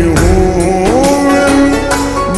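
A slowed-down, reverb-heavy Punjabi song playing: a held melody line that bends up and down in pitch over a steady deep bass.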